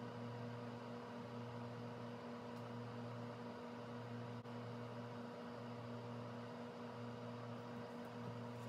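Steady low electrical hum in a quiet room, with a faint tick about four and a half seconds in.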